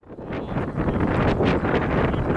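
Wind buffeting the camera microphone: a loud, steady low rumble that rises out of silence over about the first half second.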